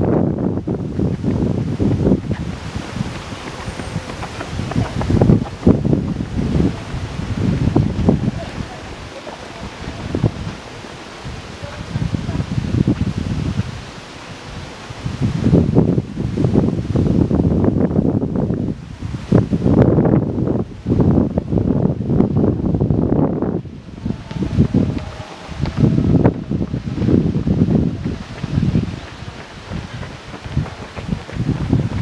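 Wind buffeting the microphone: a loud, irregular low rumble that comes in gusts, with a quieter lull about a third of the way in.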